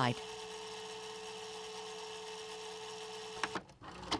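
A steady electronic hum with a held tone, cutting off sharply about three and a half seconds in, followed by a few short crackly glitch bursts.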